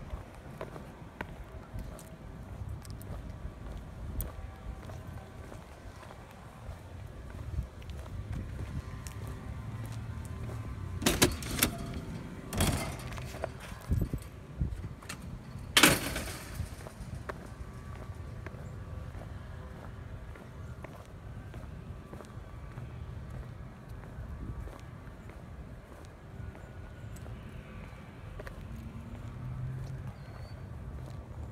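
Outdoor ambience picked up by a handheld phone carried on foot: a steady low rumble of wind and handling, with several sharp knocks in the middle, the loudest about halfway through.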